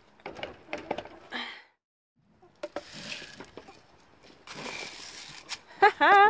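Light clicks, knocks and rustles of a plastic hanging feeder and feed scoop being handled over spilled pellets, with a short laugh partway through.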